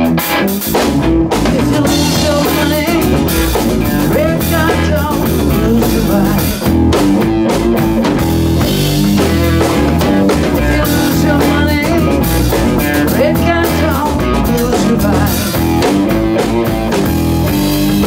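Live blues-rock power trio playing loudly: an electric guitar riff with bent notes over electric bass guitar and a full drum kit.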